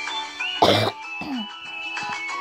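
Background music runs throughout. A little over half a second in, a loud, short cough-like burst from a voice (heard as 'Oh') cuts in, followed by a brief falling vocal sound.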